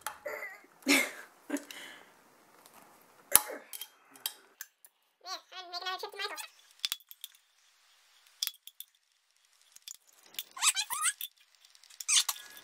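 Cheap hand-held hole punch being squeezed through the thin metal wall of a cat food can, giving a string of irregular sharp clicks and snaps. A drawn-out squeak comes about five seconds in.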